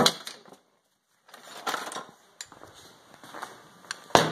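Light clinks, taps and knocks of metal parts being handled as a steel roller winch fairlead is taken out of a box of parts, with one sharper click partway through.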